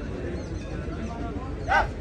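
Outdoor crowd chatter from spectators, with one short, loud, high-pitched cry near the end.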